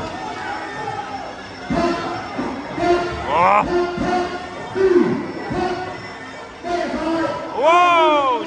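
Ringside Muay Thai fight music: a reedy wind instrument plays held, wailing notes with swooping pitch bends over drum strokes, echoing in a large hall. The loudest swoop comes near the end.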